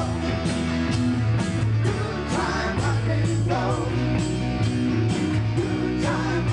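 A rock and roll band playing live, with electric guitars and bass guitar over a steady beat.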